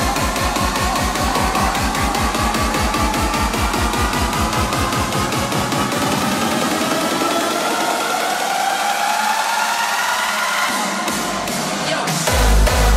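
Hardstyle dance track in a build-up: a drum roll that speeds up under a rising synth sweep, while the bass thins out and drops away. The heavy kick drum comes back right at the end as the drop hits.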